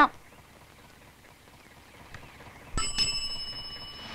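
A bus bell rings about three seconds in, a bright metallic ring that fades slowly; the bell a bus conductor sounds to signal the driver.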